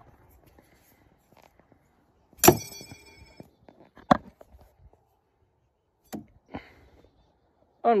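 A thrown steel throwing knife strikes with a sharp metallic clang that rings for about a second, followed by a second sharp knock a second and a half later and two fainter knocks near the end.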